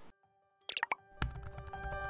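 Channel outro jingle: after a brief silence, a few short gliding blip effects, then bright music with bell-like mallet notes starting just over a second in and growing louder.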